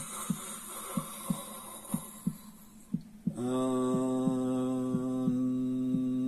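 A heartbeat thumping in lub-dub pairs about once a second, setting the pace for breathing and chanting. A breathy hiss fills the first half; from about halfway, one low hummed chant note is held steady.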